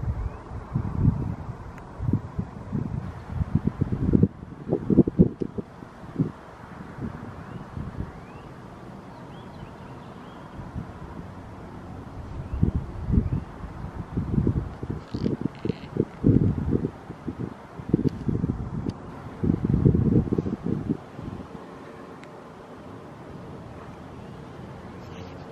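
Wind buffeting the microphone in irregular gusts: a low rumbling that comes and goes, dying down for a few seconds in the middle and again near the end.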